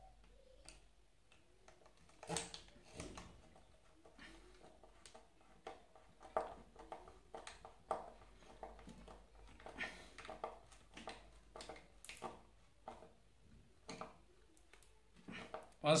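Hand screwdriver turning screws to fix a small DC motor into its metal mount: irregular small clicks, scrapes and knocks of metal on metal, the loudest about two seconds in.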